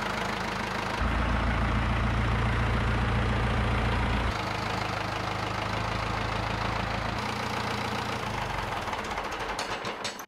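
Ford 5000 tractor's four-cylinder engine running steadily, heard in a few short takes whose sound changes abruptly about a second in, again near four seconds and near seven seconds.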